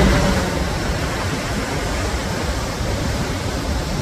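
Steady rush of a tall waterfall, about 100 m of falling water: an even, unbroken noise.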